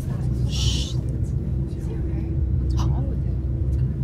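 Steady low rumble of an airliner cabin in flight, with a single short "shh" hush about half a second in.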